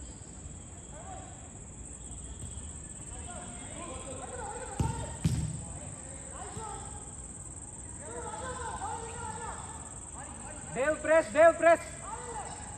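Football players calling out across the pitch during a match, with two sharp thuds of the ball being kicked about five seconds in. Near the end a voice close by gives four quick, loud shouts.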